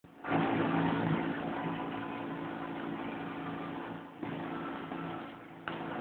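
Outboard motor of a MacGregor 26M motorsailer running steadily under way, a steady engine tone under a dense hiss. The sound cuts off and starts again abruptly twice, about four seconds in and near the end.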